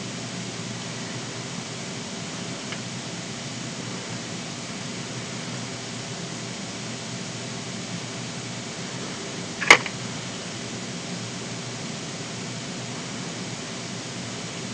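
Steady background hiss of room tone, with one short click a little under ten seconds in.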